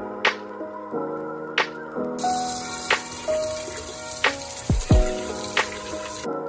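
Background music with a steady beat; from about two seconds in, a kitchen tap runs over a strawberry being rinsed under it.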